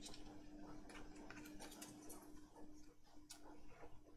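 Faint, scattered light ticks and rustles of paper cutouts being handled and pressed flat onto a journal page by hand, over a faint steady low hum.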